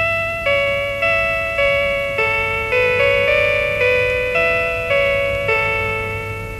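A radio interval signal: a nursery-rhyme tune played slowly on a chiming instrument, one struck note at a time. Each note rings and fades, just under two notes a second.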